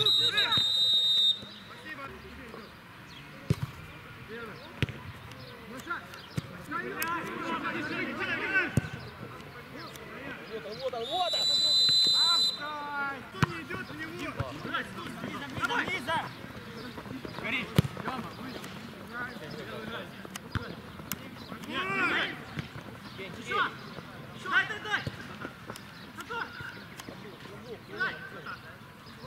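Referee's whistle blown twice, a shrill steady blast of about a second at the start and a slightly longer one about eleven seconds in, between players' shouts and the thuds of a football being kicked.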